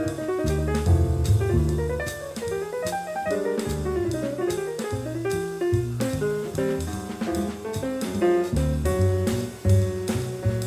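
Small-group jazz from a quartet of piano, vibraphone, double bass and drum kit: busy drumming with cymbals over moving bass notes, with a stream of short piano and vibraphone notes above.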